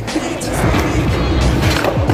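Skateboard wheels rolling over rough concrete, a steady rumble.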